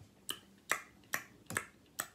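Finger snapping: four crisp snaps in an even rhythm, about two and a half a second.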